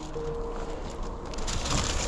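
Thin plastic carrier bag rustling and crinkling as it is handed over, louder in the second half, with quiet background music underneath.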